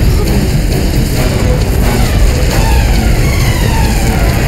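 Dramatic TV-serial background score mixed with a loud, steady low rumble. A few faint tones slide downward near the end.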